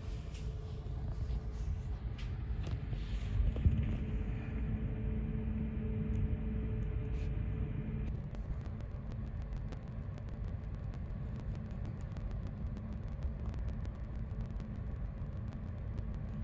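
Low, steady rumble on the deck of a large car ferry slowly coming into harbour, with a faint hum that stops about halfway through.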